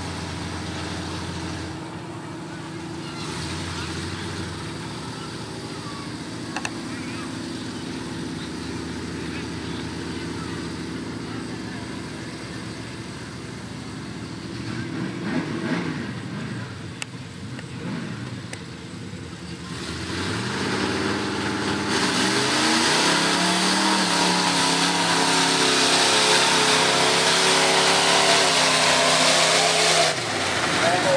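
Dodge Ram pickup engine idling at the line with a few blips of the throttle, then opened up to full throttle about two-thirds of the way in, loud and climbing in pitch as the truck charges into the mud bog.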